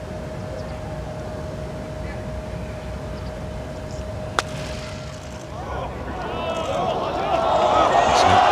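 A single sharp click of a golf club striking the ball on a short chip shot, a little past halfway. About a second later a crowd's voices start to rise and swell into shouts and cheers as the ball runs toward the hole.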